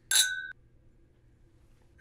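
Two tulip-shaped glass whiskey tasting glasses clinked together in a toast: one bright clink that rings in two clear tones for about half a second, then cuts off suddenly.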